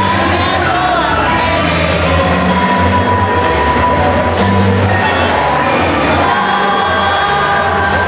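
A mixed choir of young male and female voices singing together, with long held notes.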